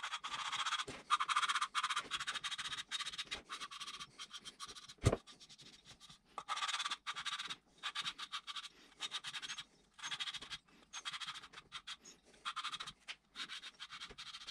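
A valve being lapped into its seat in a Nissan Z24 cylinder head: repeated gritty scratching as the valve is twisted back and forth against the seat with abrasive lapping compound, in short strokes with brief pauses. A single sharp knock comes about five seconds in.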